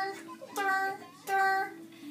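A girl's voice singing three short held notes at a steady pitch, each under half a second, as vocal sound effects.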